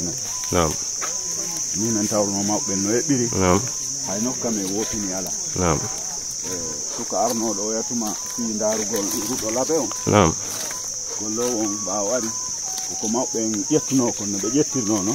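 Insects droning in one steady high-pitched note, with people talking in the background throughout.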